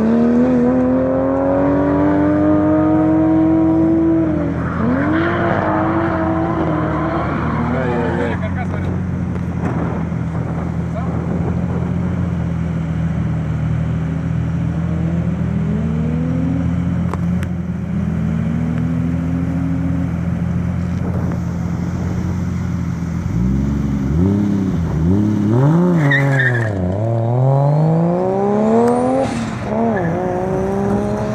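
Drift car engines at high revs: one car's engine climbs and dips in pitch as it slides through the course, then a nearby car's engine runs steadily at idle before being revved hard up and down several times as it pulls away. A high whistle rises near the end.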